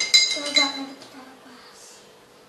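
A spoon clinking against a glass jar while stirring oil and water in it: a few quick ringing clinks in the first half second, then the stirring stops.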